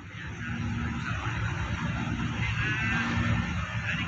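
Steady low rumbling background noise that comes up over the first second, with a faint distant voice rising and falling about two and a half seconds in.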